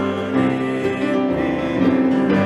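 Small acoustic string band playing a bluegrass-style instrumental passage, with acoustic guitar and upright bass holding steady notes.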